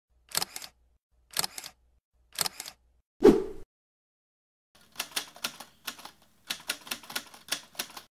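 Logo-intro sound effects: three short bursts of sharp clicks about a second apart, a single heavier thump about three seconds in, then after a short gap a quick run of typing-like clicks as text comes up on screen.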